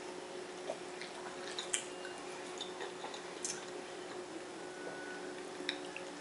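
Faint chewing and wet mouth clicks from people eating pizza, a few small sharp clicks spread through, over a steady low hum.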